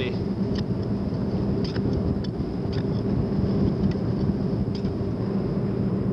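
Steady low rumble with a faint machine-like hum throughout, and a few faint light taps.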